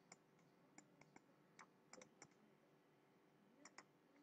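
Faint computer mouse clicks: about ten short, sharp clicks at irregular spacing, with a small cluster near the middle and two more near the end.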